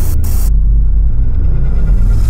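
A loud, deep rumble that takes over about half a second in, after a brief hiss cuts off.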